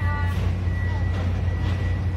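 A steady low hum with a faint steady high whine above it, and a brief snatch of voice at the start.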